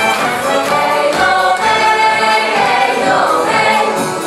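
A mixed choir of a Polish folk song and dance ensemble singing a Polish Christmas carol (pastorałka) with instrumental accompaniment.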